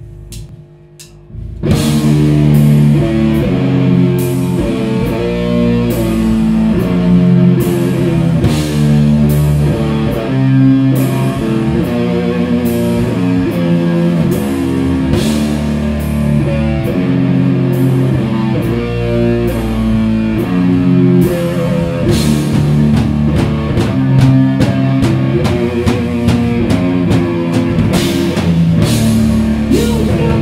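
Live doom/sludge metal band playing: heavily distorted guitar and bass with a drum kit. After a quiet held note, the whole band crashes in together about two seconds in and plays on at full volume with steady drum and cymbal hits.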